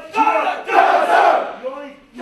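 Loud shouting by a group of men: a single yelled voice, then many recruits yelling together for about a second in unison, as in a drill-instructor command and the group's shouted reply.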